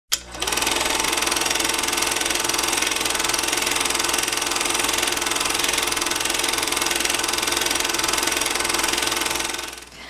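Movie film projector running: a steady, rapid mechanical clatter that begins just after a sharp click and fades out near the end.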